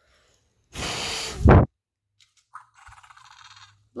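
A hard breath blown straight at the microphone, a rush of air about a second in that lasts under a second and is loudest at its end, as the Fingerlings Untamed T-rex toy is blown in the face. About two and a half seconds in, a short, faint electronic sound follows from the toy's small speaker.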